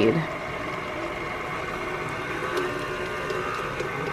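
Stand mixer motor running steadily on low speed, its paddle attachment turning a wet bread dough in a steel bowl.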